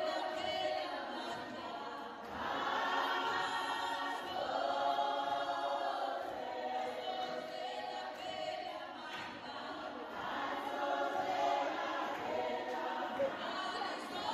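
A group of women singing together in chorus, in long sung phrases with short breaks between them.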